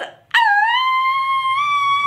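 A woman's long, high-pitched excited squeal ("Ah!"), starting about a third of a second in and held on one note that rises slightly in pitch.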